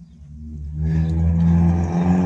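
A vehicle engine droning at a steady pitch, growing louder over the first second as it comes close and then holding loud.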